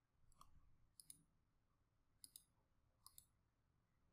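Faint computer mouse clicks: four quick pairs of clicks, press and release, spread over a few seconds against near silence.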